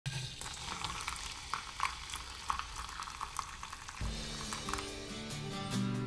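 Crackling, sizzling hiss with scattered pops for about four seconds, then guitar music starts.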